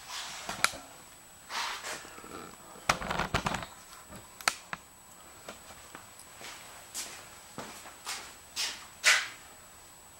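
Scattered clicks, knocks and brief scuffs of someone handling things and moving about, with a short run of knocks about three seconds in.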